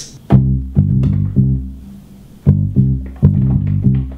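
Bass-guitar line played on a MIDI keyboard through a software instrument: a short phrase of low plucked notes, played twice with a brief gap between.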